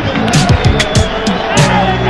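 Football stadium crowd loudly cheering and chanting in celebration of a home goal.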